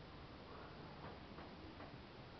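Quiet hall room tone with a few faint ticks of footsteps on the stage.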